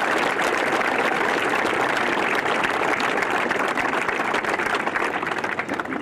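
A crowd clapping in steady applause that eases off slightly near the end.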